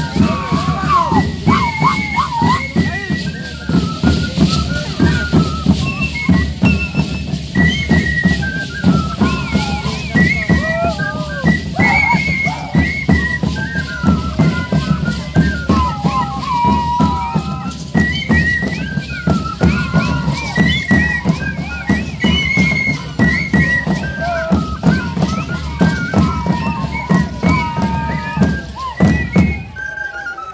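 Live Andean folk music for the Shacshas dance: a high flute melody of short gliding, trilling notes over a steady, driving beat of hand-held drums, with the rattling of the dancers' leg rattles.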